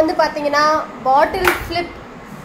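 Excited voices calling out, with one sharp slap, like a hand clap, about one and a half seconds in.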